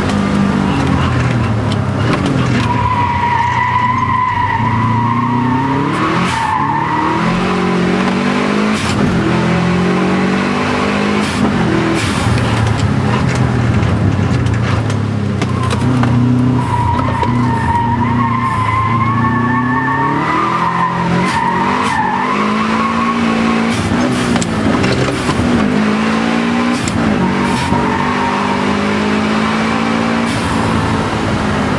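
Subaru Impreza WRX STI's turbocharged flat-four engine, heard from inside the cabin, revving up and dropping back as it is driven hard through the gears. The tyres squeal twice through corners, about three seconds in and again past halfway.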